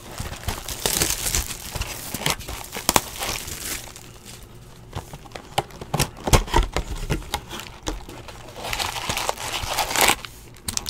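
Plastic shrink wrap crinkling and tearing as it is stripped off a cardboard box of trading-card packs, then several knocks as the box is opened and the wrapped packs are lifted out and stacked, with more crinkling of pack wrappers near the end.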